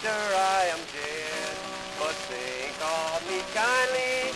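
Man singing a cowboy ballad to acoustic guitar accompaniment on a 1925 78 rpm shellac record, with the constant hiss and crackle of the disc's surface noise.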